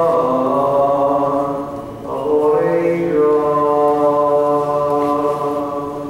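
Orthodox liturgical chant: voices singing slow, long-held notes in two phrases, with a brief breath between them about two seconds in.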